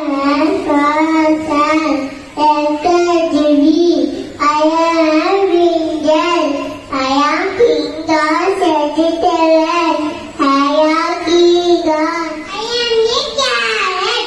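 A young child singing solo into a microphone, in short phrases with held notes.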